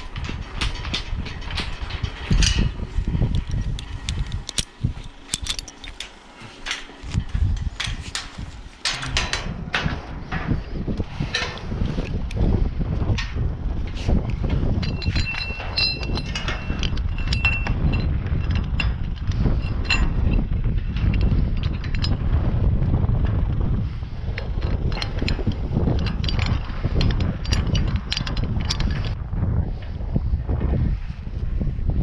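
Clicks and knocks of a person climbing a steel windmill tower, gloved hands and boots striking the galvanised rungs and braces, over a low rumble of wind buffeting the microphone.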